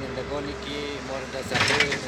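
A man speaking, with a short loud hiss about one and a half seconds in.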